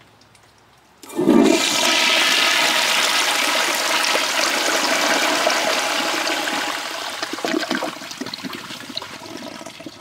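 1927 Standard Devoro flushometer toilet flushing. The water comes on abruptly with a low thud about a second in, rushes loudly and steadily for several seconds, then dies down unevenly near the end.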